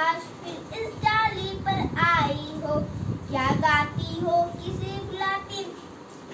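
A young girl's voice reciting a Hindi children's poem aloud in a sing-song chant, phrase by phrase with short pauses between lines.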